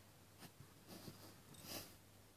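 Near silence: three faint, short rustles as a hand handles a fidget spinner on carpet, the last one near the end the clearest, over a steady low hum.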